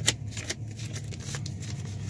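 A few short clicks and rustles of handling noise close to the microphone, the strongest right at the start and another about half a second in, over a low steady hum inside a vehicle cabin.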